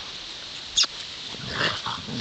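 Two Bernese mountain dogs play-fighting, with short vocal noises from the dogs. There is one brief, sharp high-pitched sound a little under a second in, and the dogs' noises grow busier over the last half second.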